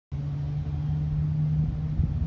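Steady low hum of running machinery, one constant low tone over a rumble.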